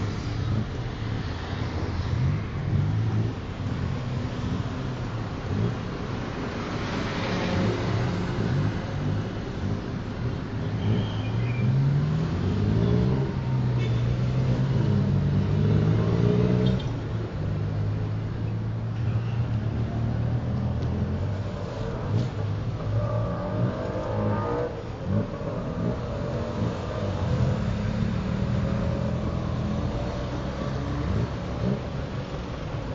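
Tuk-tuk engine heard from on board, running continuously through traffic and revving up in pitch several times as it accelerates, with a noisy background of surrounding traffic.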